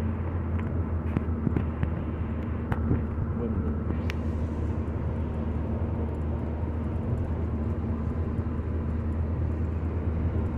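Steady road noise inside a car's cabin as it drives along a highway: a low drone with a faint steady hum above it and a few faint ticks.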